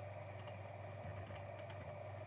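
Quiet room tone with a steady electrical hum, broken by a few faint computer mouse clicks.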